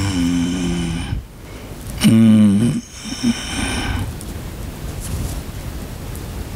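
An elderly monk's voice on a close headset microphone: a drawn-out low vocal sound through the first second, then a louder one about two seconds in whose pitch rises and falls, with quiet room noise after.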